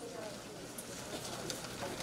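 Low room tone in a pause between spoken phrases, with a few faint soft ticks.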